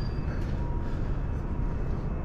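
Steady low rumble of outdoor city background noise, with no distinct event standing out.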